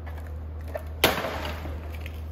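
A single sharp knock about a second in, with a short ringing tail, over a steady low hum.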